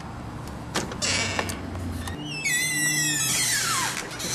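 An entrance door being opened: a few clicks and a short noisy stretch, then a long squeal that slides steadily down in pitch over about a second and a half as the door swings.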